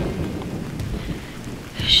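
Steady rain noise, with a low rumble at the start.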